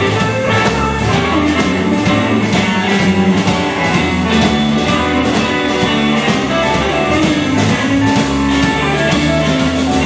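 Live blues band playing an instrumental passage: two electric guitars over bass guitar and a drum kit, with a steady beat.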